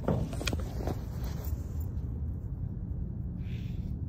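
A steady low rumble, with a few sharp clicks or knocks in the first second and a short burst of hiss near the end.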